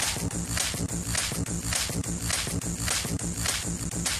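Footsteps crunching in snow at a regular pace, a little under two steps a second, over steady outdoor noise.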